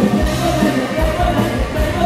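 Live band music played loud through a PA, with a steady drum beat and a male singer's voice over it.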